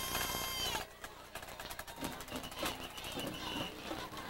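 Referee's pea whistle trilling for about a second near the end, blowing the play dead after the tackle pile-up, over voices from the crowd. Earlier, a held high tone cuts off under a second in.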